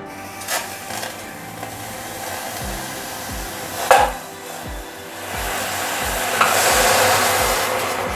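Hot tea hitting a heated clay pot (kulhad) and sizzling, the hiss swelling to its loudest in the last couple of seconds. Two sharp knocks of clay or metal, about half a second and four seconds in.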